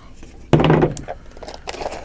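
Cardboard packaging being handled: a box sleeve slid off and the lid opened, with light rubbing of card on card. A short spoken sound from a man, a brief untranscribed word, is the loudest thing, about half a second in.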